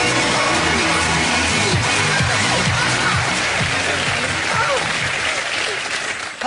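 Upbeat walk-on music with a steady beat over studio audience applause, both easing off near the end.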